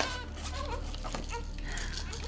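A baby fussing in short, wavering whimpering cries, with a brief knock right at the start.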